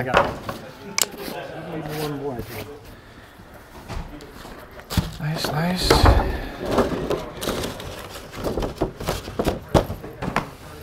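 Cardboard shoe boxes, lids and paper being handled on a counter: a few sharp knocks and rustles, with voices in the background.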